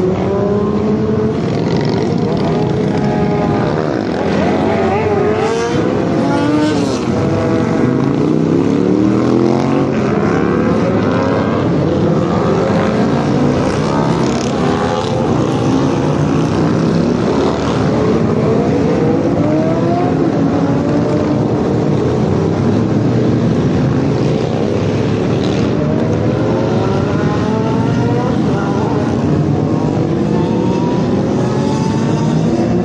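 Engines of several cars and motorcycles revving and accelerating at once, their notes rising and overlapping without a break.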